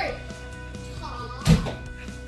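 A single thump about one and a half seconds in, as a toddler stomps his foot down onto a folded paper book on a hardwood floor, over steady background music.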